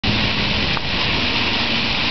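Many ground-level plaza fountain jets spraying up and splashing back onto wet paving: a steady, even rush of water, with a faint low hum beneath.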